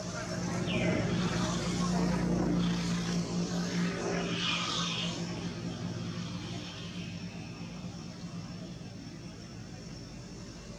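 A motor engine's drone swells over the first couple of seconds and fades away by about seven seconds in, as it passes by. A few short, higher-pitched sounds sit over it, about a second in and again around four to five seconds.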